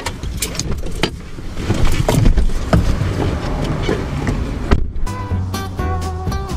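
Seatbelt and door clicks with rustling in a vehicle cab as the occupants unbuckle and get out. About five seconds in, this cuts off and background music with sustained notes begins.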